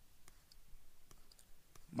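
A few faint, scattered clicks of a stylus tapping and moving on a pen tablet while handwriting, over quiet room tone.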